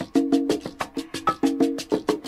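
Salsa music with no vocals: a short chord figure repeated over and over, over quick, steady, sharp percussion strikes.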